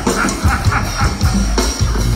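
Live go-go band playing, with the drum kit and bass carrying a steady beat.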